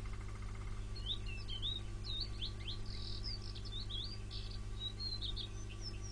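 A small songbird twittering faintly in a quick run of short chirps that sweep up and down in pitch, over a steady low hum.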